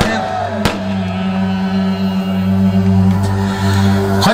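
Live wedding band playing halay dance music: a long, steady held note over a low drone, with a single drum hit just under a second in.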